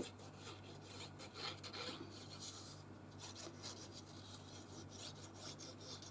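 Faint scratchy rubbing of a glue bottle's nozzle drawn over cardstock in short, irregular strokes while liquid craft glue is applied.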